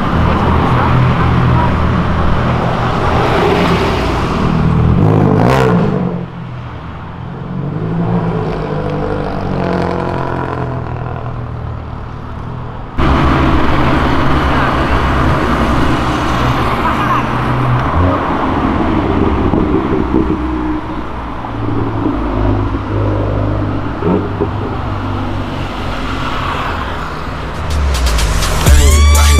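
Road traffic: cars and motorcycles passing one after another, engines running and accelerating. The sound changes abruptly about halfway through, at a cut to another pass.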